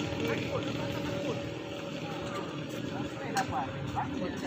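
Players' voices calling out in the background over a steady hum, with a few sharp knocks from about three seconds in, typical of a sepak takraw ball being kicked.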